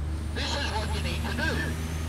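Road traffic: a steady low engine drone from a vehicle on the adjacent road, with a man's voice speaking in short phrases over it.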